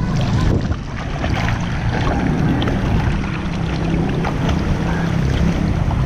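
Pool water churning and splashing around a camera held at the surface while a swimmer swims breaststroke: a steady low rumble of water with small splashes through it.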